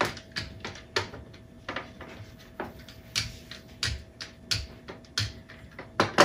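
Irregular sharp taps and knocks of kitchen work, about two a second: a wooden rolling pin working dough on a cutting board and rolled dough being pressed onto a metal baking sheet.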